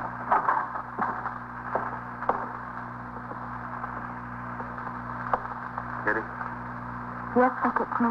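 Low-fidelity 1950s radio drama recording: steady mains hum and hiss with a few soft clicks, and a short stretch of speech near the end.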